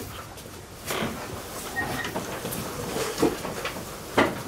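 Room handling noises: a few brief knocks and rustles, the clearest about one second and three seconds in, as paper sheets are handled.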